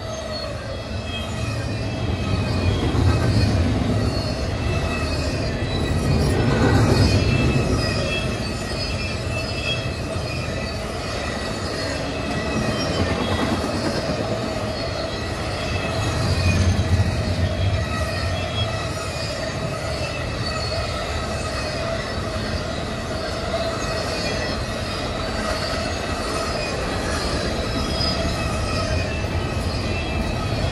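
A heavy double-stack intermodal freight train's well cars rolling past at close range, a steady low rumble of wheels on rail swelling a few times as cars go by. Several steady high-pitched tones of wheel squeal run over the rumble.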